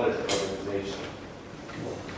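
A man's voice speaking a few words that trail off in a room, with a short, sharp noise about a quarter of a second in.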